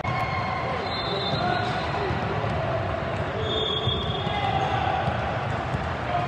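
Basketball game sounds on a court: the ball bouncing amid a steady background of voices and chatter in the gym.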